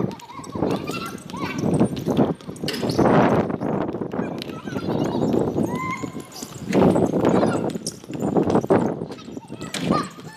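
Basketball players' voices calling out during a game on an outdoor court, with footfalls and the knock of a dribbled ball on the hard court.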